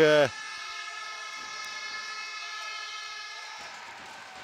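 A steady, horn-like pitched tone held for about three seconds in the arena, fading away shortly before the commentary resumes.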